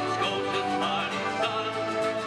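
A man singing with acoustic guitar accompaniment, holding long notes in a folk-style song.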